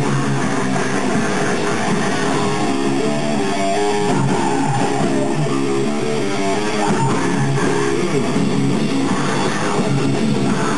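Speed metal band playing live: fast electric guitar riffing over bass guitar, loud and steady.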